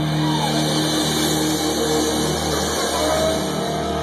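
Live rock trio of electric guitar, bass and drum kit holding a loud chord under a steady wash of cymbals.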